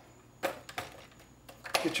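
A sharp click about half a second in, then a few lighter knocks, as a feed-tube part is pushed down and seated in a Dillon XL650 reloading press.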